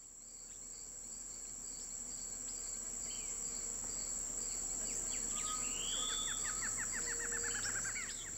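Tropical forest-edge ambience fading in over the first few seconds: a steady high-pitched insect drone, with birds calling over it, among them a whistled call about three seconds in and a rapid run of short notes slowly falling in pitch near the end.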